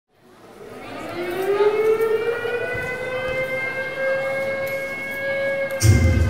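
Air-raid-style siren sound effect opening a dance music track: one wail that fades in, rises in pitch over the first couple of seconds and then holds. A heavy bass beat drops in near the end.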